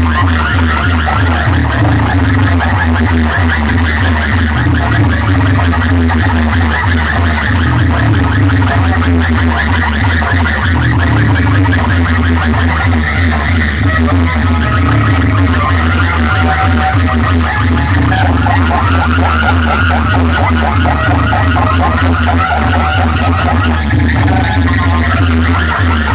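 DJ music played very loud through giant outdoor speaker stacks, dominated by heavy bass.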